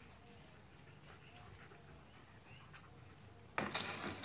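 Cardboard box rustling and scraping as a German shepherd pushes its head into it, starting suddenly about three and a half seconds in. Before that it is quiet, with a few faint light clinks.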